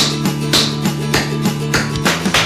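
Tap shoe taps striking a wooden floor in a steady rhythm, about three to four strikes a second, over guitar backing music.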